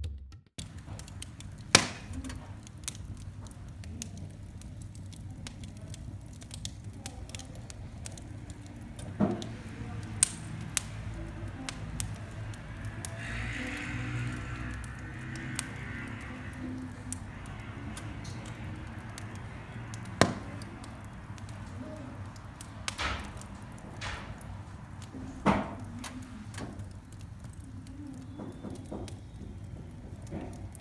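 Wood fire burning in a fireplace, crackling with many small sharp clicks and a few louder pops over a low steady rumble, with a soft hiss about halfway through.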